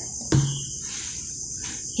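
Steady high-pitched insect trill, typical of crickets, in the background, with a single sharp click about a third of a second in.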